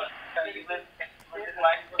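Quiet male speech with the narrow sound of a telephone line.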